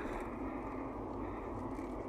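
Steady road and engine noise of a car driving, heard from inside the cabin.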